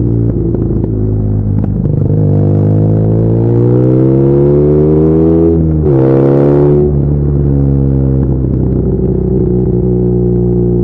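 BMW R nineT's boxer twin, fitted with aftermarket headers and the exhaust flapper valve removed, pulling with its pitch rising for a few seconds. The pitch drops sharply at an upshift about halfway through, rises briefly again and drops once more, then the engine settles into a steady cruise for the last few seconds.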